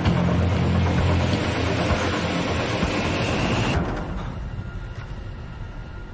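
Film soundtrack: music under a dense, rumbling, hissing magical-energy sound effect that cuts off suddenly about four seconds in, leaving quieter music.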